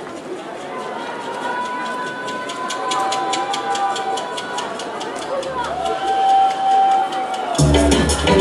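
Live band starting a song: crowd noise with a few long held high notes, joined about three seconds in by a steady quick ticking beat, then the full band comes in with heavy bass and drums just before the end.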